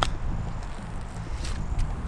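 Golf iron striking the ball: one sharp click at the start, followed by low wind rumble on the microphone.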